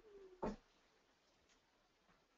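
Near silence: a woman's voice trails off faintly at the start, with a brief soft sound about half a second in.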